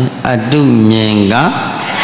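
A Buddhist monk's male voice chanting in a drawn-out, sing-song recitation, holding one long vowel that dips and then rises, followed by a breathy hiss near the end.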